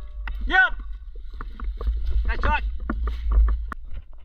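Outdoor airsoft skirmish: a low rumble of wind and movement on the microphone under scattered clicks and snaps, with two short shouted voice calls, one about half a second in and one about two and a half seconds in.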